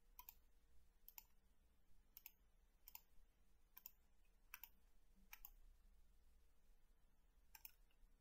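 Faint computer mouse clicks, about eight at irregular intervals over roughly eight seconds, each one placing a corner of a polygon selection in the software.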